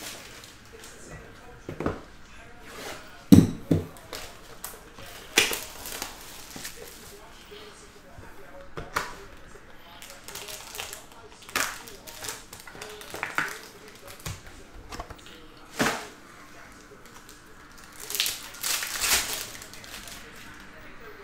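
Hands opening a Panini Spectra football box and handling its foil packs and cards on a table: scattered rustles, taps and knocks, the loudest knock about three seconds in.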